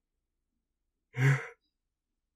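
A single short, breathy sigh from the speaker's voice, about a second in, lasting under half a second.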